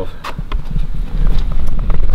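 Irregular low rumbling handling and wind noise on the microphone, with scattered knocks, as the camera is carried around; it grows louder near the end.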